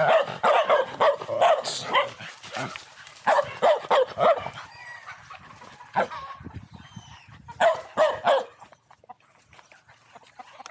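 Dogs barking in short, sharp barks, coming thick and fast for the first four seconds or so, with one more bark about six seconds in and a quick run of barks near 8 seconds, then stopping.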